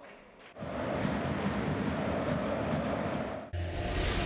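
Steady sports-hall ambience, a general hum of court and crowd noise, starts about half a second in and holds even for about three seconds. It is cut off near the end by music starting.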